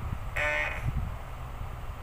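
A woman's brief, flat-pitched nasal hesitation sound, held for about half a second, as she tries to recall the next word of a song. A steady low hum runs underneath.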